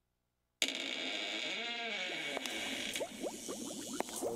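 Silence for about half a second, then a sound effect cuts in suddenly: a steady hiss with a slow, wavering tone that rises and falls, giving way to many quick rising blips like bubbling.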